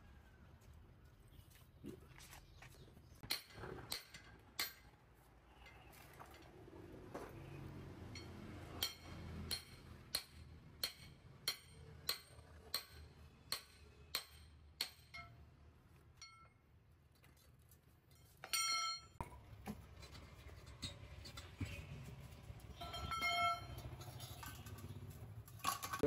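Metal striking metal on a removed truck rear wheel hub with a steel drift set in its bore: a regular run of ringing blows, about three every two seconds, then a louder single ringing clang, with more ringing strikes near the end.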